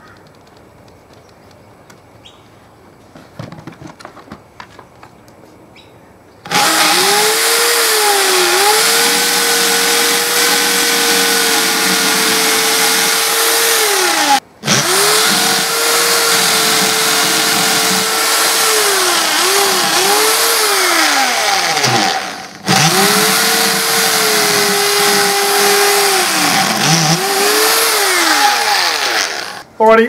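Cordless drill boring into a plywood shield in three long runs, each starting abruptly after a few faint knocks. The motor holds a steady pitch, then dips and recovers several times near the end of each run as the bit bites.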